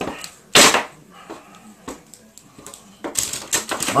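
Plastic action figures being handled and knocked against a toy wrestling ring: one loud, sharp knock about half a second in, then a few light clicks and taps, and a quick clatter of handling near the end.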